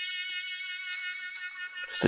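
The MYNT3D 3D pen's small filament-feed motor running in reverse to retract the PLA filament: a steady, high-pitched whine.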